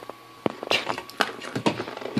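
Scattered light clicks and knocks from hands handling a DIY 3D printer's aluminium-extrusion frame, starting about half a second in.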